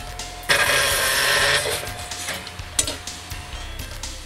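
Circular metal-cutting saw running with a steady whine; about half a second in, its blade bites through a steel tube with a loud, harsh hiss lasting about a second, then it runs on until the whine fades near the end.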